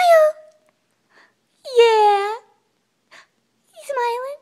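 Yorkshire terrier whining in three drawn-out, high-pitched moans that bend in pitch, the longest in the middle, an excited greeting, with faint sniffs between them.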